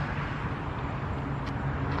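Steady outdoor background noise with a low, even hum, and a faint click about one and a half seconds in.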